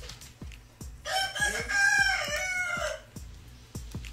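A rooster crowing once, a long call of about two seconds that rises and then falls, loud over background music with a steady beat.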